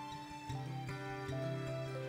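Slow, soft instrumental worship music from a church band. A melody of held notes steps down four times over sustained bass notes.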